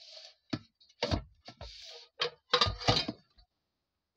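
A run of sharp knocks and clatters close to the microphone, loudest around the middle, with two short hisses between them: handling noise while the phone is moved about.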